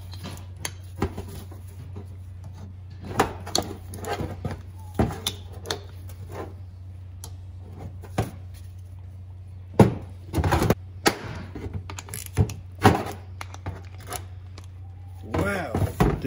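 Ratchet and socket extension working the tight cover bolts out of a stock LS truck oil pump: scattered ratchet clicks and metal knocks against a steel bench, over a steady low hum.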